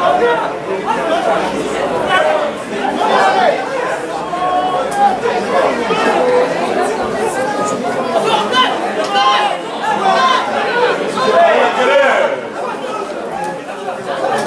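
Many overlapping voices chattering and calling out at once, with no single clear speaker.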